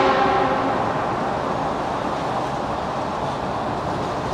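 Steady road and engine rumble inside a lorry cab driving through a road tunnel, with the echo of the lorry's just-sounded air horn dying away in the first moment.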